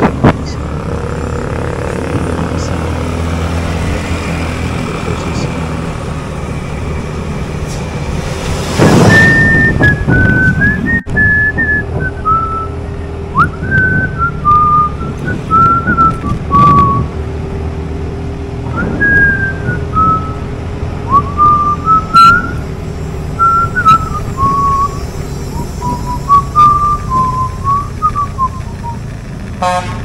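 Motorcycle riding noise with wind on the microphone, then from about nine seconds in a person whistling a wandering tune, one clear note at a time, over the running engine.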